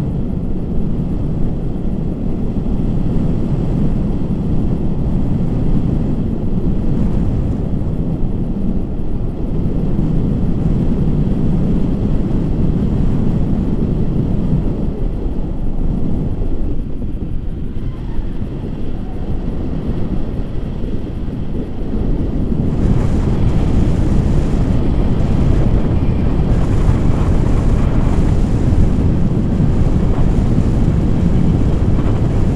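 Wind from the airflow of a paraglider in flight buffeting the camera's microphone: a loud, steady, low rumble that grows louder and brighter about three quarters of the way through.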